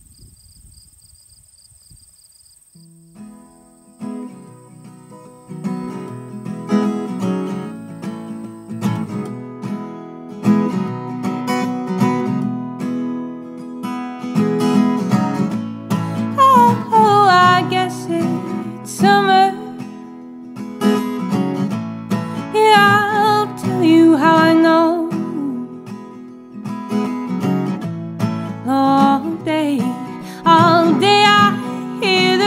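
High, steady insect trilling for the first few seconds, then an acoustic guitar begins playing the song's intro about three seconds in. A higher, wavering melody line joins about halfway through.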